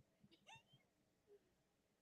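Near silence, broken by one faint, short, rising high call about half a second in and a fainter short note a little later.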